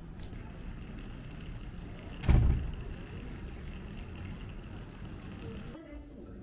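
Street ambience with a steady low rumble, broken by one loud, short thump a little over two seconds in.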